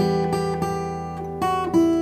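Takamine acoustic guitar fingerpicked: an E minor chord with a high G on top rings out, with a few single notes plucked over it, a new higher note sounding about a second and a half in.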